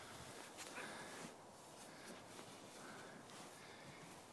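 Near silence: faint outdoor background hiss, with a couple of faint brief sounds.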